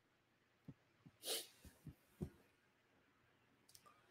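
Near silence, broken about a second in by a man's faint short breath through the nose and a few soft clicks.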